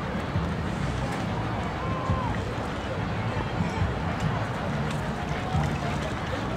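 Indistinct talking voices over a steady background of outdoor noise.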